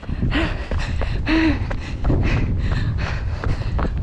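Wind buffeting the microphone with a steady low rumble, over a runner's heavy panting and short gasping breaths, out of breath from a steep climb.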